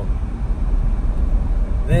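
Steady low rumble of road and engine noise inside the cabin of a moving vehicle.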